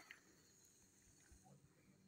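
Near silence: faint outdoor background with no distinct sound.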